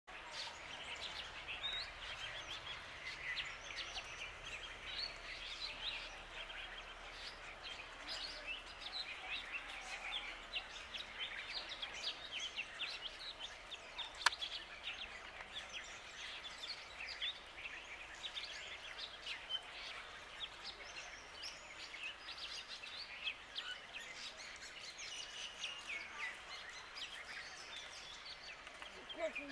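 A continuous background chorus of many wild birds chirping and calling with short, high notes, and one sharp click about halfway through.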